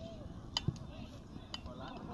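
Faint, distant voices on an open sports field, with a couple of light clicks and a short low knock.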